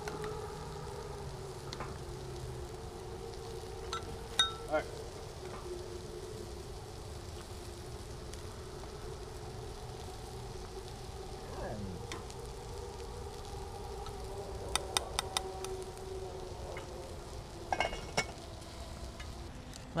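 Pork chops and chili sizzling in pans over a campfire, a steady frying hiss with a low steady hum beneath. A few light clinks of utensils on the cookware come around four to five seconds in, and again in a short run near fifteen seconds.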